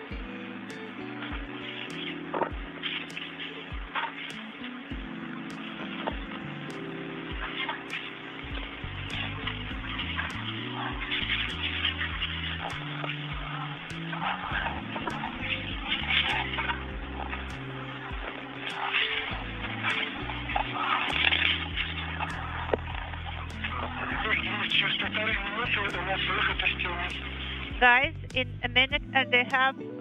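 Spacewalk radio loop: a hissy, muffled, band-limited radio channel carrying faint, indistinct voices. It becomes louder and choppier, with warbling, about two seconds before the end.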